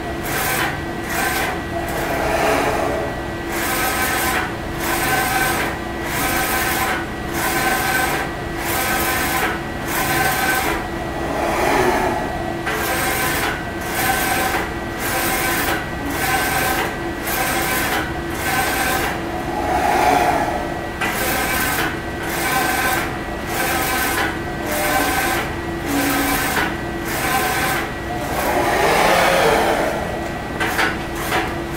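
Spyder II direct-to-screen inkjet printer printing onto a screen: the print-head carriage shuttles back and forth in a regular rhythm, about one pass a second, over a steady hum.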